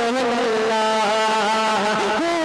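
A man singing a naat into a microphone, drawing out long wavering held notes; one held note gives way to a higher one a little over half a second in.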